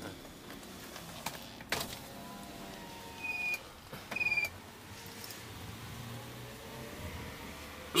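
Quiet inside a slowly moving car: a faint low running hum, a sharp click, then two short high-pitched beeps about a second apart.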